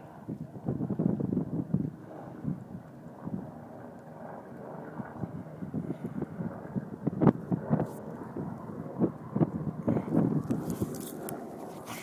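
Wind buffeting a phone's microphone in uneven gusts, with a couple of sharp handling knocks about seven seconds in.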